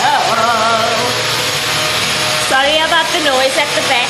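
Playful, drawn-out vocalizing by a woman and a girl, their voices wavering up and down in two stretches, over a steady rushing noise.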